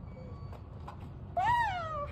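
A single loud, high-pitched cry that rises and then falls in pitch, lasting about half a second and starting about one and a half seconds in.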